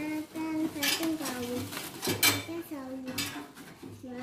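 Painted metal parts of a rice mill frame clanking and clattering against each other inside a cardboard box as they are handled, with several sharp knocks, the loudest about two seconds in.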